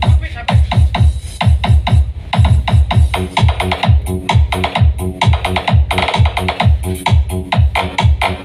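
Electronic dance music played loud through a rented stage PA sound system during a sound check, with a steady, heavy bass-drum beat.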